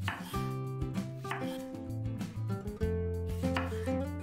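Chef's knife slicing through tomatoes on a wooden cutting board: a few separate cuts, each ending in a tap of the blade on the board. Background music with held notes plays throughout.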